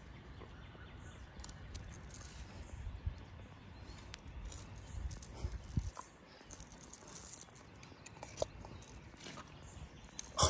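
Faint scattered clicks and rustles of hands working fishing line and a hook free of a gar's mouth, with a few sharper taps, over a low rumble.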